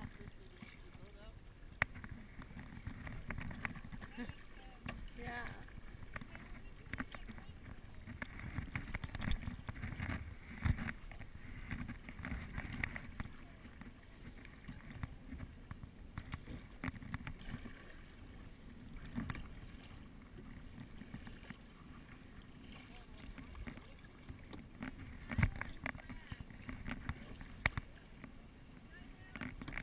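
Wind rumbling on the microphone of a kayak-mounted camera, with water splashing and dripping from paddle strokes. Faint voices of nearby kayakers now and then.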